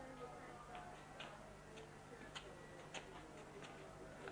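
Faint sharp ticks, roughly one every half-second to second, over a faint murmur of distant voices.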